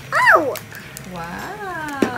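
Young girls' wordless exclamations: a loud, high squeal sliding steeply down in pitch near the start, then a quieter drawn-out 'ooh' in the second half.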